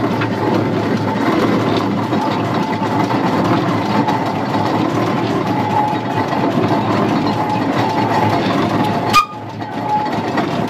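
1904 Fowler road locomotive's steam engine running, heard from the footplate, with the steady clatter of its motion and gearing. Near the end there is a sharp click, and the sound briefly drops.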